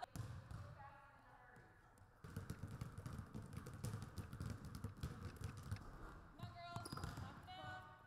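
Basketballs being dribbled on a hardwood gym floor: a quick, irregular run of many overlapping bounces that starts about two seconds in.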